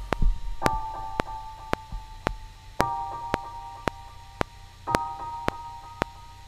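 Logic Pro X's Ghost Piano software instrument playing held chords in G minor, a new chord about every two seconds, over a steady metronome click about twice a second.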